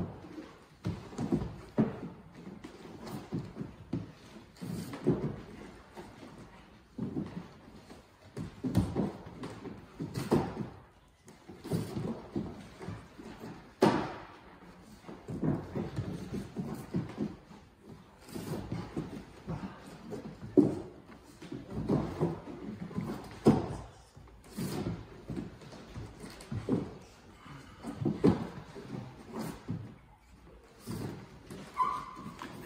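Two men's hard breathing and exhalations during a bodyweight exercise, in short irregular puffs every second or two. Occasional sharper thuds come from hands and feet landing on a wooden floor.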